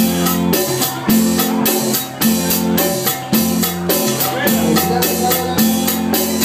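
Live cumbia band playing an instrumental passage: an even drum and percussion beat under sustained low held notes.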